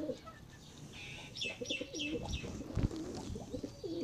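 Domestic pigeons cooing in a loft, low rolling coos coming in two spells. About a second and a half in, a bird gives a quick run of four or five short high chirps.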